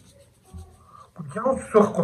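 A brief lull, then a person's voice starts speaking about a second in.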